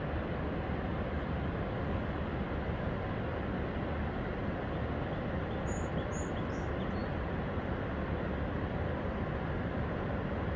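Steady, even rushing roar of a river waterfall, water pouring over the Kanawha Falls.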